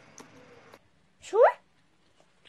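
A person's voice: one short exclamation that rises sharply in pitch, after a moment of faint room noise.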